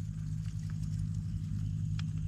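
A steady low hum made of several held tones, like a motor running, with faint ticks over it.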